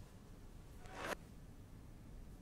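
Short whoosh transition sound effect for a TV news channel's logo wipe. It swells for about half a second and cuts off sharply just after a second in, over a faint low hum.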